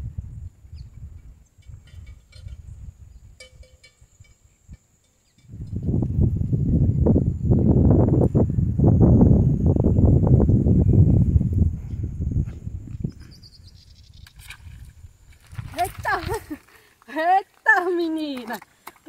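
Wind buffeting the microphone: a low rumbling that is loudest in the middle and dies away. Near the end a woman's excited voice comes in as a tilápia is swung out of the water on a pole.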